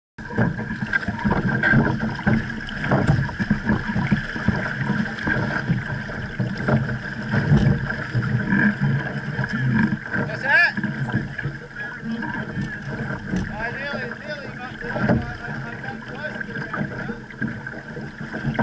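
Choppy lake water splashing and slapping against a small boat's hull close to the microphone, in irregular surges, with wind buffeting the microphone.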